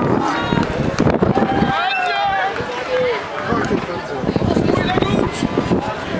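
Several people's voices calling out and talking, with a high gliding call about two seconds in.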